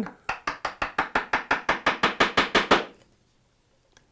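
Bench chisel struck in quick light taps, about eight a second for some two and a half seconds, chopping down into the knife line to clear waste between dovetail pins.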